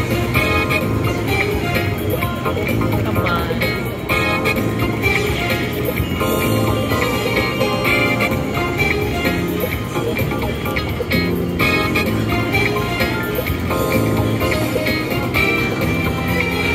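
Quick Hits slot machine's free-games bonus music and reel-spin sound effects playing continuously, with bright chiming jingles recurring every couple of seconds as the free spins land and the bonus win is counted up.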